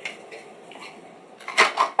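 A spoon knocking and clattering against a glass blender jar of blended walnut milk, a few sharp knocks about one and a half seconds in.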